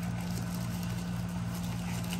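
A steady low hum, with faint light rustling as a one hand handles and pries at a plastic-wrapped product box.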